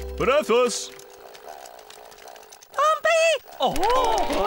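Cartoon penguin characters speaking Pingu's nonsense language: two short rising-and-falling calls near the start, a quieter gap, then two more arched calls about three seconds in, the second pair with a rapid wavering in pitch. A steady low background tone stops within the first half second.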